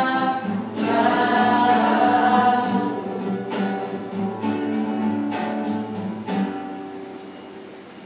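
A small group of young men's and women's voices singing a scripture song in harmony, accompanied by a strummed acoustic guitar. After a last strum about six seconds in, the final chord is held and fades away as the song ends.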